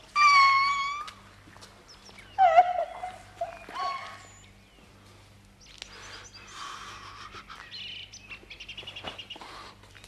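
A woman wailing in tears in a high voice: a loud drawn-out cry at the start, then two shorter cries over the next few seconds, followed by fainter high chirping sounds.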